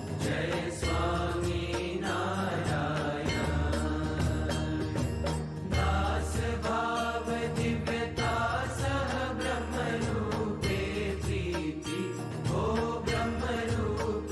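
Hindu aarti hymn sung as a devotional chant over music, with a steady rhythm of sharp percussive strokes.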